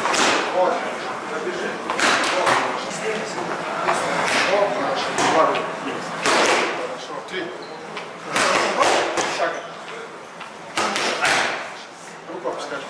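Gloved punches smacking into focus mitts, landing in quick combinations of two or three sharp hits with short pauses between, over voices in a large hall.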